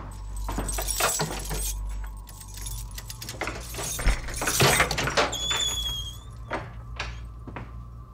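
A key rattling and clicking in a door lock as the doorknob is worked, with a short high squeak from the door about five seconds in, over a steady low hum.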